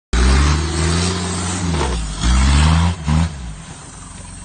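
Mitsubishi Delica L400 Space Gear van's engine revving hard under load as it climbs a steep muddy slope. The engine runs in two long bursts with a brief dip between them, then gives a short blip and drops away near the end.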